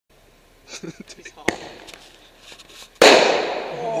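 A firework going off: a sharp crack about a second and a half in, then a loud bang about three seconds in whose noise dies away over about a second.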